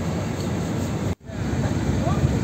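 Steady low rumbling noise on the open deck of a river tour boat among many others: boat engines and wind on the microphone. It cuts out abruptly for a moment about a second in, then carries on.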